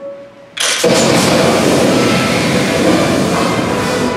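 Theatrical stage effect: the orchestra breaks off, and about half a second later a sudden, loud, steady rushing blast of noise starts and cuts off near the end as the music returns, while jets of white vapour stream at the sides of the stage.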